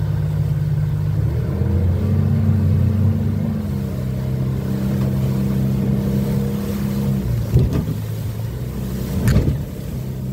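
Suzuki outboard motor driving a boat at speed, a steady drone that steps up in pitch about a second in and then holds. Two short thumps come near the end.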